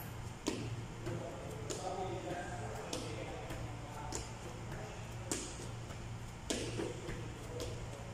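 Sneakers landing on a rubber gym mat during jack planks: a short thud as the feet jump in or out, about once every 1.2 seconds, seven in all.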